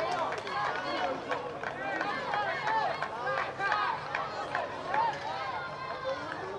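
Several voices shouting and cheering over one another outdoors, the excited calls of a goal celebration.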